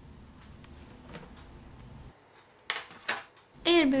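Two short, sharp plastic clacks about half a second apart, a little before the end: the clear plastic tray of a food dehydrator being taken hold of and turned by hand. Before them there is only faint room noise.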